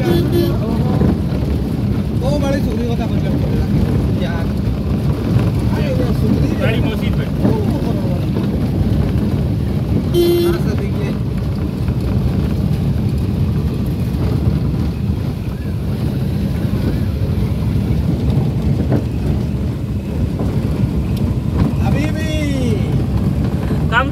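Steady low road and engine noise of a car driving, heard from inside the cabin. A short horn toot sounds at the very start and again about ten seconds in.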